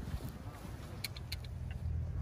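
Wind buffeting the microphone as a steady low rumble, with a few faint light clicks about a second in.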